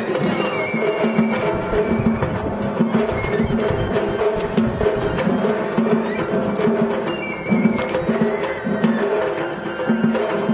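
Japanese festival float music (matsuri-bayashi) played on the float: taiko drum and other percussion in a steady, repeating rhythm, with pitched parts over it.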